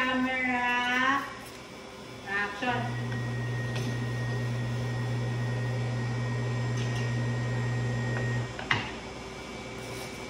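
A small electric benchtop lab machine hums steadily for about six seconds, with a faint high whine over it, then cuts off with a click. Brief voices come just before it starts.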